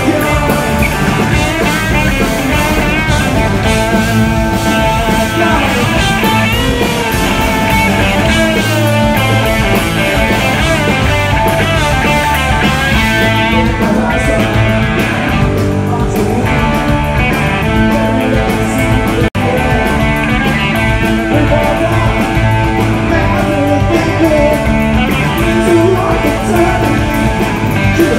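A rock band playing loud and live: electric guitar, electric bass and drum kit, with a singer. The sound cuts out for an instant about two-thirds of the way through.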